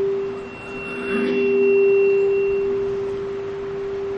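A steady, single-pitched ringing tone from a public-address system, swelling and then slowly fading, with a fainter high-pitched ring joining it for about two seconds in the middle: the microphone and loudspeakers feeding back while the voice pauses.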